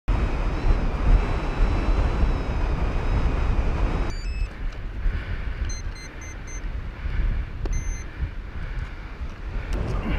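Strong wind of about 25 knots buffeting the microphone with a heavy low rumble for the first four seconds. Then, with the wind quieter, short electronic beeps: a few at about four seconds, four quick ones about six seconds in, and a single longer beep near eight seconds.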